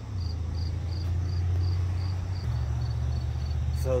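Insects chirping in an even pulse, about three chirps a second, over a louder low rumble that steps up in pitch about halfway through.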